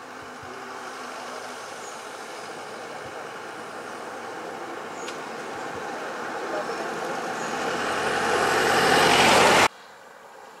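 A road vehicle's engine and road noise growing steadily louder as it comes close, with a faint rising whine near the end. The sound cuts off suddenly just before the end.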